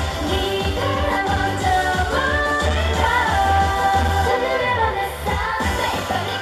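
K-pop girl group singing live over a pop backing track with a pulsing bass, played loud through the stage speakers.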